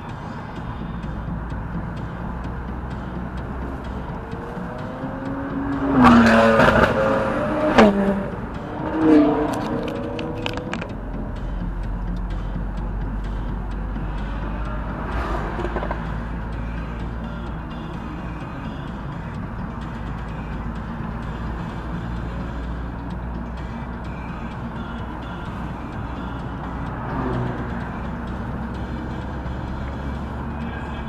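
Steady engine and road noise inside a car driving at moderate speed. From about six to eleven seconds in, a louder stretch with a wavering pitch and a few sharp clicks rises over it, then the steady hum returns.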